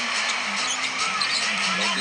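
Basketball arena ambience: music over the arena PA with a held, wavering note, crowd noise, and a basketball bouncing on the hardwood court.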